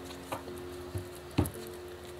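A few light taps and knocks from a tarot card deck being handled against the table, the loudest about one and a half seconds in, over faint held notes of soft background music.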